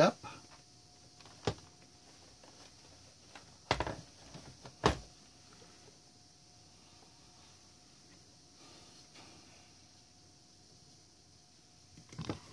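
Quiet room tone with a faint steady hiss and a thin, high steady hum, broken by three short knocks: one about a second and a half in, and two more close together a little before and around the five-second mark.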